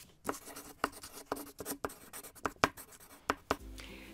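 Chalk writing on a blackboard: a quick run of short, scratchy strokes, several a second and uneven in rhythm.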